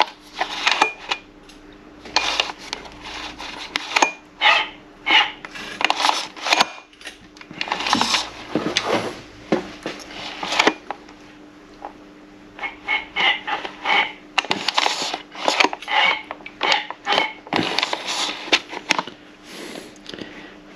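Mercury 3.5 hp four-stroke outboard being turned over by hand with its recoil starter rope, pulled in short slow tugs: irregular clicks and rattles from the starter and engine. The engine is being brought round to the flywheel timing mark for a valve clearance check.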